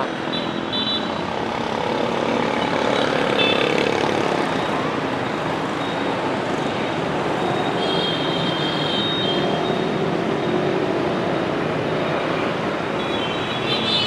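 Busy street traffic dominated by motorbikes and scooters, a steady mix of small engines and road noise heard from a rider in the middle of it. A faint high tone sounds briefly about eight seconds in.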